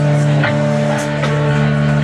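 Live instrumental rock band playing: electric basses ring sustained low notes that change every half second or so, over regular drum hits.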